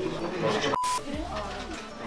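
A short electronic glitch sound effect about a second in: the audio drops out for an instant, then a brief steady beep with a burst of static hiss cuts off abruptly. Voices can be heard before and after it.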